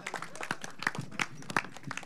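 Scattered hand clapping from a group of people: irregular separate claps rather than full, loud applause.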